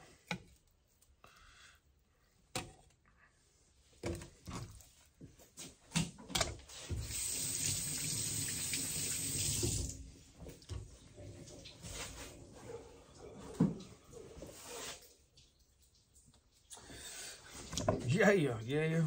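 Tap water running steadily for about three seconds, most likely for rinsing hands and fish. Scattered knocks and handling clatter come before and after it.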